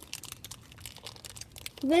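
Foil wrapper of a Dorina chocolate bar crinkling faintly and irregularly as it is handled, in many small crackles.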